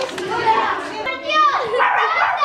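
Children's voices talking and calling out in a room, with one louder high-pitched call about halfway through.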